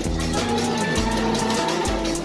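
Music with a steady beat: held notes over a bass hit about once a second and a fast, even tick.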